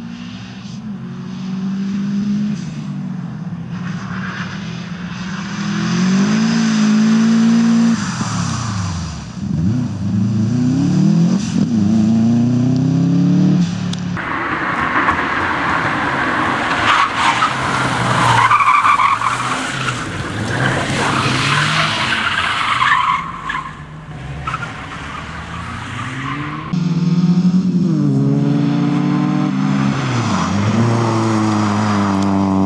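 Rally cars driven hard on a circuit: engines revving up and falling away through gear changes, then from about the middle a long stretch of tyre squeal as a car skids through a corner, and engine revving again near the end.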